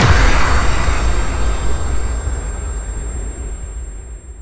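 Logo-sting sound effect: a whooshing impact with a deep rumble, fading slowly away.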